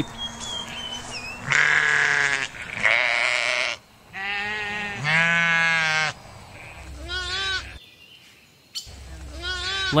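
A flock of sheep bleating: several long, separate bleats about a second each, with higher, shorter, wavering bleats near the end.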